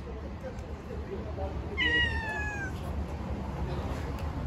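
A cat meowing once, about two seconds in: a single drawn-out meow just under a second long that falls slightly in pitch.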